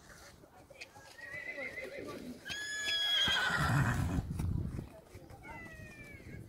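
A horse whinnying loudly about halfway through: a high, steady call that drops slightly in pitch and breaks into a lower, rougher sound before fading.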